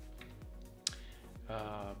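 Quiet background music with one sharp click a little under a second in; a man's voice starts near the end.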